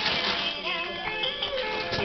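Children's electronic toy guitar playing a synthesized melody of held notes changing in steps through its built-in speaker.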